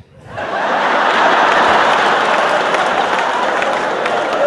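A large audience laughing and applauding, swelling up about half a second in after a punchline and holding steady.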